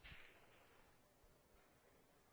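Near silence: faint room tone of the hall, with a brief faint hiss in the first half second that fades away.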